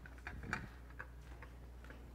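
Faint, irregular light clicks and taps of communion plates and cups being picked up and handled, over a low steady hum.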